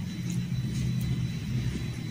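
A low, steady rumble that swells slightly and eases off near the end, with a few faint clicks above it.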